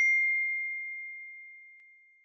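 A single bell-like ding sound effect, struck once at the start and ringing out as one clear tone that fades away over about two seconds.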